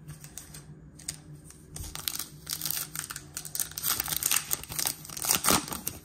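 Foil wrapper of a trading card pack crinkling and crackling as it is handled and torn open. The crinkling starts about two seconds in and is loudest near the end.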